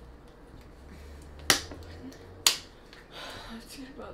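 Two sharp clicks about a second apart as a stick of a Boom Boom Balloon game is pushed down notch by notch through the plastic frame toward the balloon.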